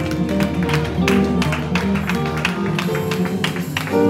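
Live gospel band playing an instrumental worship passage: guitar and keyboard chords over bass, with quick percussive hits through it.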